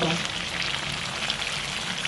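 Slices of sweet beef dendeng shallow-frying in hot oil in a wok: a steady sizzle with fine crackles.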